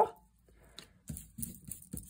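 Hands handling paper and a roll of double-sided tape on a wooden table: a scatter of short, light rustles and taps starting about half a second in.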